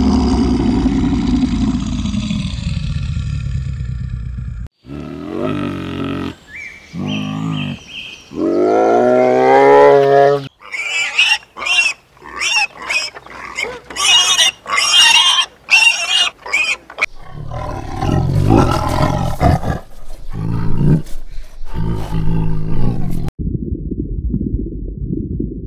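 A run of different animal calls one after another: a long low growl, then several pitched cries, one rising steadily, then a quick series of short, shrill squeals, then repeated low grunts.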